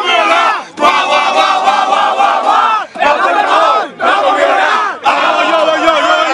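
A crowd of young men shouting and yelling together in long held cries, several voices at once, with short breaks between shouts.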